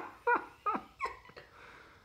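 An animal's short yelping cries, four in a row about three a second, each dropping steeply in pitch, dying away after a second or so.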